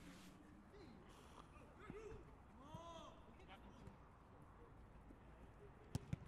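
Near silence: faint, distant shouts of players on a football pitch, with a single sharp knock near the end.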